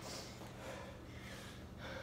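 A man breathing hard between heavy barbell lifts: several quick, noisy breaths, about one a second.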